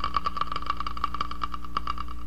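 Cartoon soundtrack effect: a held high note with fast, evenly spaced clicking, stopping shortly before the end.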